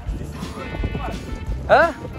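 Footsteps on a wooden dock, a run of dull low thuds, with a short questioning voice ("Hã? Hã?") near the end and background music underneath.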